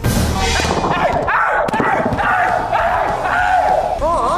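Excited shouting voices over background music, opening with a brief hiss.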